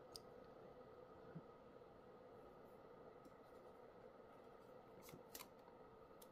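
Near silence, with a few faint ticks of a plastic screen-protector film and its backing sheet being handled and lifted, two of them close together about five seconds in.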